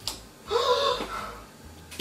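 A single sharp click, then about half a second in a short voiced sound from a person that rises slightly in pitch and fades away.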